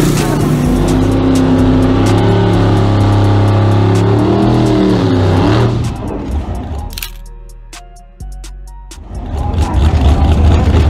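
A drag-race car engine running loud and revving, mixed with music. The engine sound drops away about six seconds in, leaving quieter music, then comes back loud near the end.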